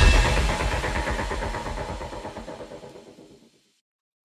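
Decaying tail of a production-logo sound effect: a deep hit with a ringing, sustained chord dies away and fades out about three and a half seconds in.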